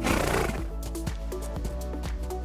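A horse gives one short, noisy snort of about half a second, the loudest sound here, over background music.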